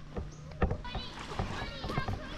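Faint voices of people talking in the background, with a few soft knocks scattered through.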